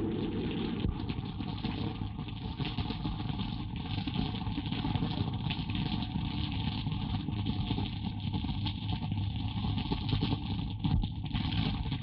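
Heavy rainstorm on a film soundtrack: a steady rushing noise with a low rumble beneath it.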